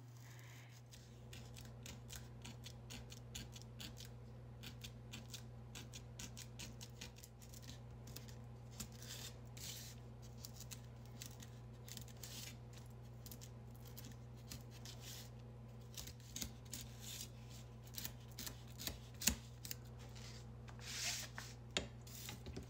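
Pencil point engraving deep grooves into a styrofoam tray: a rapid run of faint, scratchy strokes, with a few louder ones near the end. A low steady hum runs underneath.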